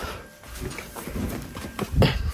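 Irregular footsteps and knocks of people moving about in a dark room, with a louder thump near the end.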